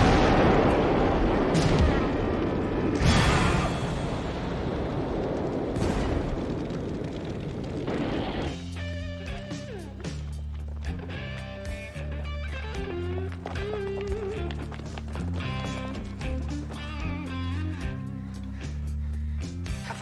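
A big explosion goes off with a loud blast, followed by several more booms and crashes over the next several seconds as it dies away. From about eight and a half seconds in, rock music takes over, with a steady drum beat, a repeating bass line and guitar.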